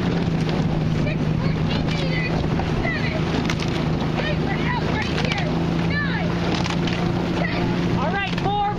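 A launch's outboard motor running at a steady cruising speed, with wind on the microphone and the splash of rowing oars at the catch.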